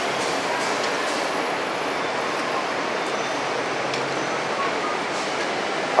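Steady street background noise, an even hiss like passing traffic, with no clear single event standing out.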